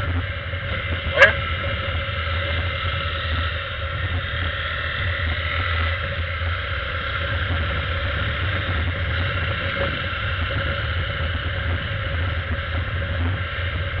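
Honda 300 single-cylinder motorcycle engine running steadily while cruising, with wind rushing over the microphone.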